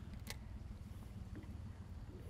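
Faint, steady low rumble of background noise aboard a small fishing boat on open water. One short, sharp click comes about a quarter of a second in.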